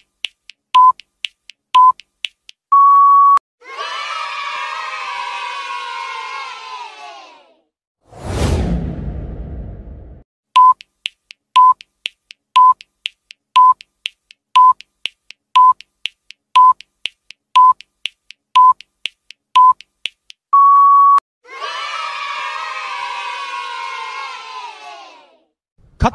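Quiz countdown timer sound effects: short electronic beeps about once a second with faint ticks between them, ending in a longer beep, followed by a few seconds of a children's cheering crowd effect. A sweeping whoosh follows, then a second countdown of about ten beeps, another long beep and the cheering again.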